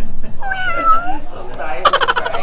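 A cat meows once, a short call about half a second in that falls slightly in pitch.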